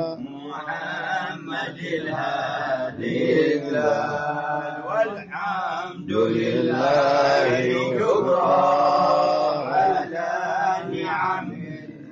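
Men chanting an Arabic devotional recitation, sung in long melodic phrases with short breaks between them.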